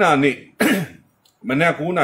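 A man talking, broken about half a second in by one short throat-clearing noise with a falling pitch, before he goes on speaking.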